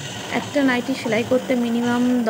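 A woman speaking, over a steady background hiss.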